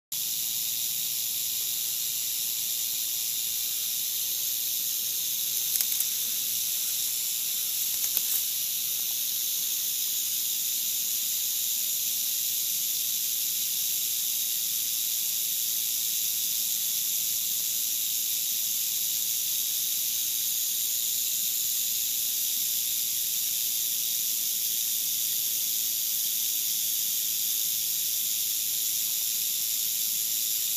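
Rattlesnake's tail rattle buzzing in a steady, unbroken high-pitched hiss: a defensive warning from a coiled, alarmed snake. Two faint taps about six and eight seconds in.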